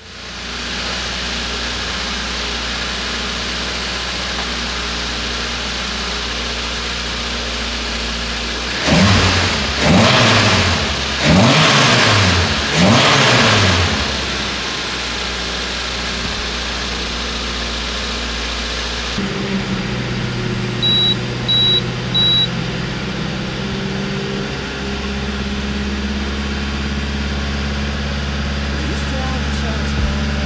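Toyota AE86 Levin's 4A-GE twin-cam four-cylinder, fitted with an aftermarket tubular exhaust header, idling steadily, then blipped four times in quick succession about a third of the way in, each rev rising and falling back to idle. About two-thirds of the way in the idle changes in tone, and three short high beeps sound soon after.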